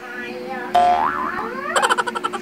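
A cartoon "boing" sound effect about three-quarters of a second in, its pitch rising and wobbling up and down. Near the end, background music with a fast, even beat starts.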